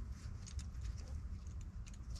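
Faint rustling and small scattered clicks of rope and climbing gear being handled against a tree trunk, over a steady low rumble.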